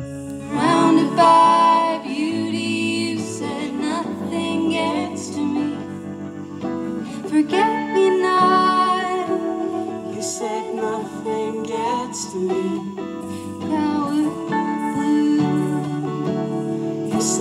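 Live band music: electric and acoustic guitars playing a song, with female singing at times.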